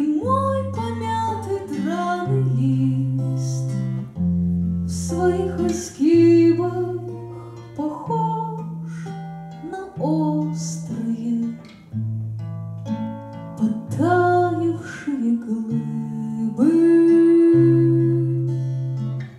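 A woman singing in Russian to her own strummed twelve-string acoustic guitar, with sung phrases over chords that change about every two seconds.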